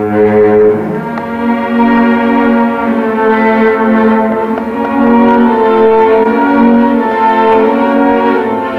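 Chamber string orchestra with solo cello playing slow classical music, the strings bowing long held chords that change every second or so.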